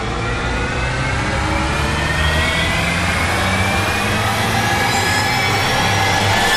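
Dramatic sound-effect riser of a TV serial: a loud swelling sound whose many tones glide slowly and steadily upward together over a low rumble, building a little in loudness toward the end.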